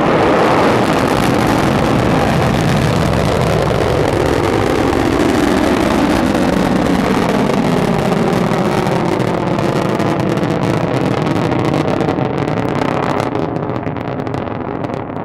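Dnepr rocket's engines running during ascent: a steady, loud rumbling noise that fades and dulls near the end as the rocket climbs away.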